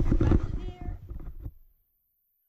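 A person's voice making a short, loud vocal sound rather than words, which stops suddenly to dead silence near the end.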